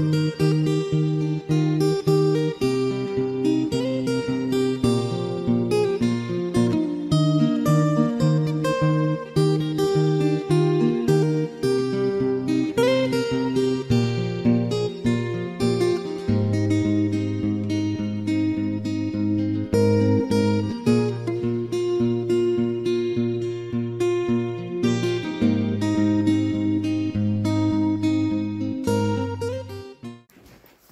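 Background music of plucked and strummed acoustic guitar, cutting off at the very end.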